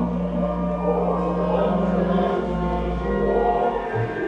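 A small choir singing a hymn in long held notes over a keyboard accompaniment.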